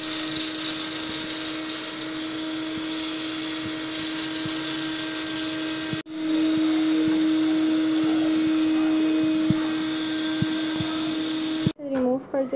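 Aluminium stovetop pressure cooker whistling: steam escaping past its weight valve in a steady, pitched hiss, the sign that the cooker has come up to full pressure. The sound cuts off briefly about six seconds in and returns louder.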